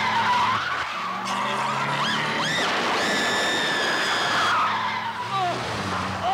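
Car tyres screeching over a running engine, with a long, steady screech from about three to four and a half seconds in.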